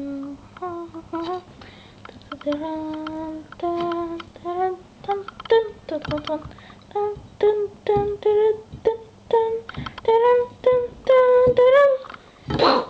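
A voice humming a wordless tune, note by note: a few longer held notes at first, then a quicker run of short notes that is loudest near the end.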